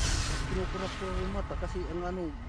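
A person speaking over a steady low rumble, with a short burst of hiss right at the start.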